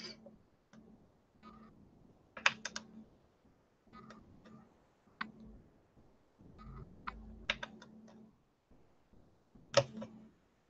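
Thin cane-slicing blade cutting down through a polymer clay cane and tapping on the hard work surface: faint, scattered clicks in small clusters, the loudest about two and a half seconds in.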